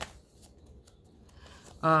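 Faint rustling of paper as the pages of a handmade paper journal are handled and turned by hand.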